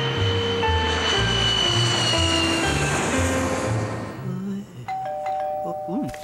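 Music with a bass line and melody ends, then a two-note doorbell chime sounds about five seconds in, a higher note followed by a lower one, both ringing on.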